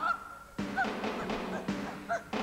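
Stage band music with sharp chord stabs about once a second, over which short honking notes sound twice near the middle.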